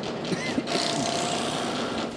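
Antique tenoning machine running; about two-thirds of a second in, its cutter heads bite into the end of a wooden board, a steady hiss of cutting wood with a faint whine, as a tenon is cut.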